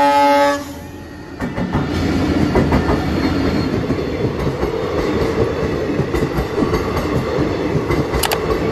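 The end of a locomotive horn blast, which cuts off about half a second in. Then an Indian Railways passenger train rolls past close by: a steady rumble of coaches, with the wheels clicking over the rail joints.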